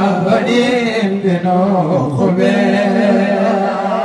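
A man chanting a Muslim devotional supplication over a microphone, unaccompanied, in long held notes that waver in pitch.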